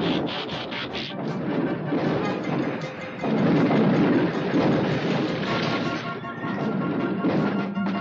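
Cartoon sound effect of the Astrotrain crash-landing and skidding through dirt: a long, dense noisy skid that gets louder about three seconds in, with music underneath.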